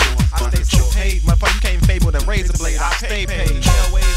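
Hip-hop track with a rapper's voice over a beat of deep bass kicks that drop in pitch with each hit.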